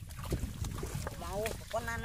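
Low wind rumble on the microphone in an open flooded field, with a couple of faint knocks from handling in shallow muddy water, and a person's voice talking from about halfway in.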